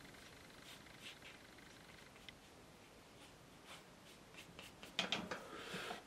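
Faint, soft strokes of a one-inch flat watercolour brush on paper, a few brief scratchy touches spread out, busier about five seconds in.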